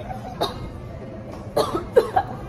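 A person's short, cough-like vocal bursts behind a hand, a brief one about half a second in and a louder one near the end, in the tail of a fit of laughter.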